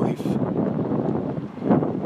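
Wind buffeting a phone's microphone outdoors: a steady, low rumbling roar.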